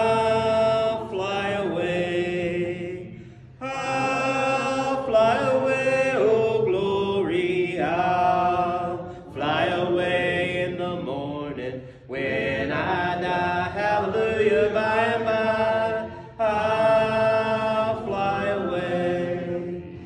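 A man's solo voice singing unaccompanied in a slow, chant-like line, in several long held phrases with short breaks for breath.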